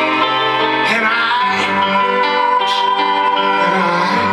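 Live band playing an instrumental passage, violin and guitar holding long sustained notes.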